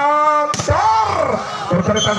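A volleyball struck hard in a spike at the net, one sharp smack about half a second in. A man's voice calls out over it in long, drawn-out cries that rise and fall in pitch.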